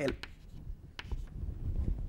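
Chalk writing on a blackboard: a few sharp taps and light scratches of the chalk stick against the board.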